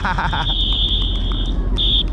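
A whistle blown in one long, steady, high-pitched blast of about a second and a half, followed by a short second blast near the end.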